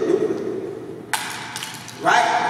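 A man's amplified voice ends on a word that fades out in a large hall. About a second in comes a single sharp click, followed by a few faint ticks.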